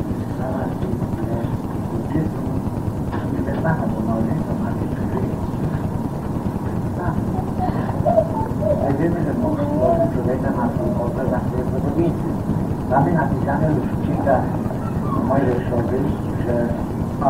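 Muffled, indistinct voices on an old cassette recording, over a steady low rumble and tape hiss; the sound is dull, with little treble.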